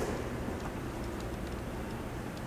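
Steady low rumbling noise with a few faint ticks.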